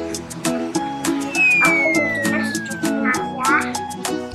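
Upbeat background music with plucked strings and a steady beat. In the middle, a whistle-like tone slides down in pitch, with short high voice-like sounds around it.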